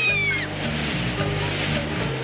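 Background music with a steady beat and a bass line. A high held note bends downward and cuts off about half a second in, and a hissing wash follows.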